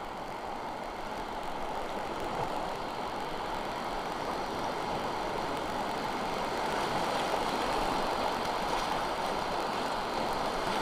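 Rushing water of a river rapid, a steady noisy rush that grows gradually louder as the canoe runs into broken whitewater.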